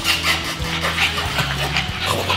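French bulldog puppies making small sounds as they play around a person, over background music with held low notes.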